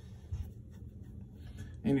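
A pause in a man's talk filled by a low, steady background hum, with a brief low bump about a third of a second in and a few faint clicks. The man starts speaking again near the end.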